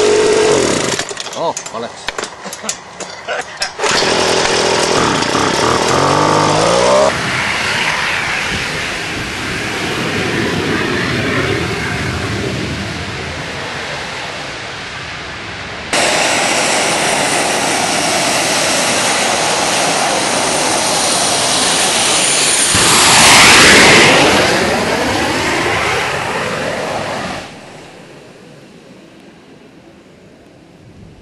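Jet kart's gas turbine engine. Close up, it runs with a steady whine, breaks into a few seconds of uneven crackling, then rises in pitch as it spools up into a steady roar. In the second half it roars as the kart approaches, gets loudest and drops in pitch as it passes, and fades away near the end.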